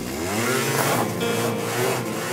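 Small scooter engine revving as the scooter rides off, its pitch rising over the first half-second and then holding.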